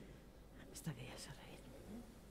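A few faint, quiet spoken words about a second in, over a low steady room hum.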